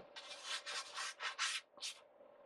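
Floury hands rubbing and brushing against each other and the flour-dusted wooden board: a quick run of about six dry swishing strokes that stops just before the end.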